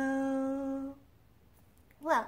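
A woman's voice holding the final note of a children's hello song at a steady pitch for about a second, then stopping.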